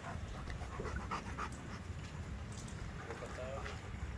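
An Alaskan malamute panting softly, close to the microphone.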